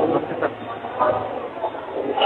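Indistinct background noise of a gathering: faint, muddled voices over a low steady hum that fades out about two-thirds of the way through.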